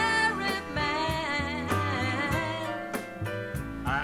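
A woman singing a ballad with vibrato, accompanied by grand piano, upright bass and drums.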